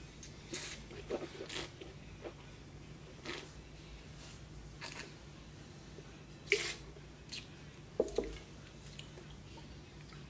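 A taster slurping and swishing a mouthful of red wine: a string of short, wet sucking and squishing sounds, the loudest about six and a half and eight seconds in.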